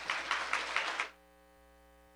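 Audience applauding, cut off abruptly about a second in, leaving a faint steady hum.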